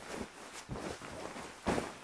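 Soft rustling of a feather-and-down duvet in its fabric cover as it is handled, in a few brief strokes.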